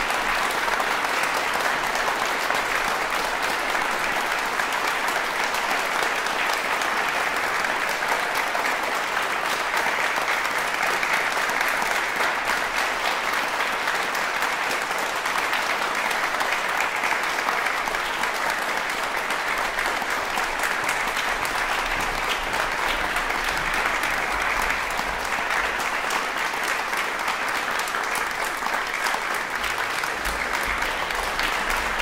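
Audience applauding at a steady, even level.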